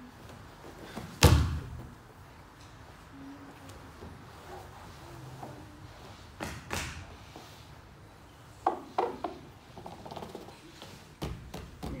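One heavy thump about a second in as a grappler drops his body onto his partner and the mat during a jiu-jitsu guard pass. Several softer thuds and scuffles follow as the two settle chest to chest.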